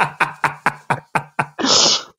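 A man laughing: a quick run of short, fading ha-ha pulses, about five a second, ending in a breathy exhale near the end.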